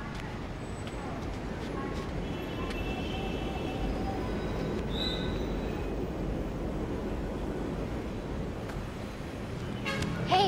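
Street traffic noise: a steady rumble of passing vehicles, with faint horn toots around three seconds in and again at about five seconds.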